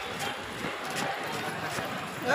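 Footsteps of a column of uniformed police marching on a paved street, the boots' knocks coming unevenly, with voices murmuring behind them.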